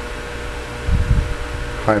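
Steady low hum with a faint steady whine above it, and a brief low rumble about a second in.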